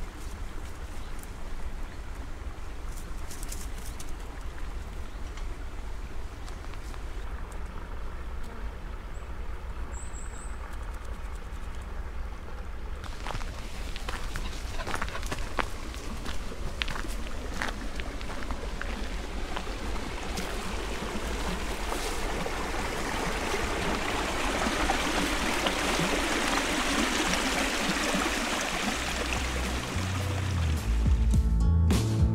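A small stream of water rushing over logs in a shallow cascade, growing steadily louder over the second half, over a low steady rumble.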